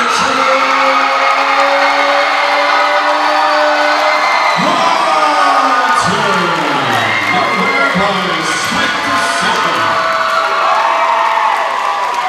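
Boxing crowd cheering, yelling and whooping for the announced winner of the fight, with a long drawn-out call held for the first four seconds.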